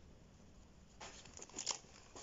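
Near silence for about a second, then a few short crinkles of a foil Pokémon booster pack wrapper as it is picked up and handled.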